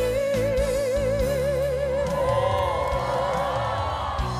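A young woman singing a Korean trot song with band accompaniment, holding a long note with wide, even vibrato. The note ends about two seconds in and the band plays on.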